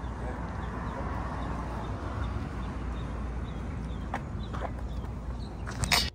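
Outdoor ambience: a steady low rumble with a bird chirping faintly a couple of times a second. Just before the end comes a loud clatter of handling knocks as the camera is picked up.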